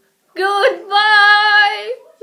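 A child's voice singing: a short rising note, then one steady note held for about a second.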